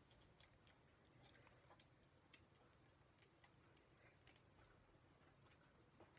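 Near silence, with faint scattered ticks of fingernails picking and peeling the backing papers off foam adhesive dimensionals.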